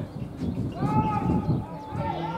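A drawn-out shout from a player on a football pitch, about a second in, rising and then falling in pitch, over low background noise.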